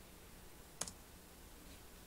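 Very quiet room tone with a single short click a little under a second in.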